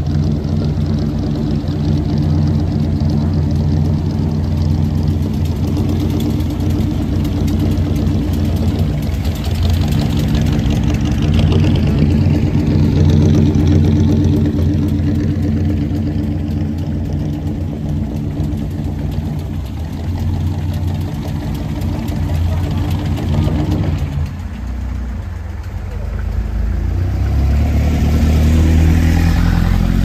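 350 V8 of a custom 1941 Ford idling steadily through its exhaust. It drops quieter for a few seconds late on, then rises in pitch and level near the end as it is revved.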